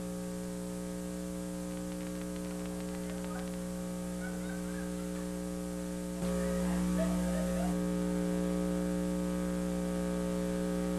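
Steady electrical mains hum with a stack of buzzing overtones, stepping up a little louder about six seconds in, with faint indistinct sounds beneath it in the middle.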